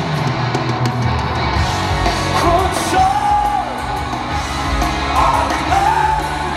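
Live rock band playing, with a lead vocal holding long sung notes over guitars, bass and drums, heard from within a stadium crowd.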